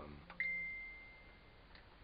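A single high electronic ding, like a device's notification chime, about half a second in, fading away over about a second.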